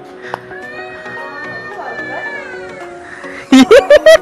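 Background music with long held notes. Near the end, three or four loud, quick high-pitched vocal calls cut across it.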